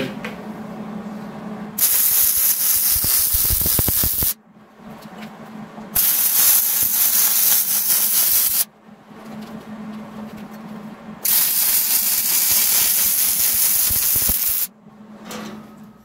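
Hobart wire-feed welder laying weld beads on the steel tubing of a bumper swing arm: three runs of steady crackling hiss, each about three seconds long, with short pauses between them, the stop-and-start rhythm of a stacked-dime bead.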